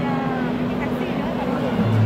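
Live band in a quiet stretch of a song: sustained low bass notes held under voices, with a new, lower bass note coming in near the end.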